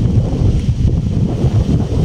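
Wind buffeting the microphone: a loud, uneven low rumble with no clear pitch.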